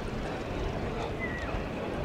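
Outdoor wind noise on the microphone over a low, steady rumble from a distant Transall C-160 military transport's turboprop engines, with a brief high whistle a little past a second in.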